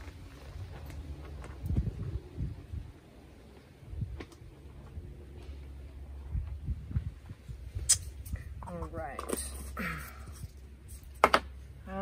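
Small handling noises as dye is worked from a jar with a paintbrush: soft low knocks and two sharp clicks near the end, over a steady low hum. A short murmur of voice comes in about three quarters of the way through.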